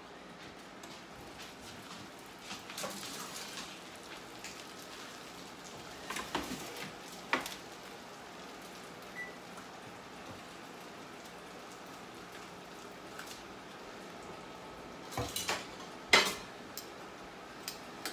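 A metal baking sheet being taken out of the oven and set down on a glass stovetop: a few sharp clanks about six and seven seconds in and a louder cluster of knocks near the end, over a steady crackle of freshly roasted bacon sizzling.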